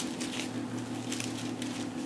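Thin Bible pages being turned and leafed through, a soft papery rustle, over a steady low hum.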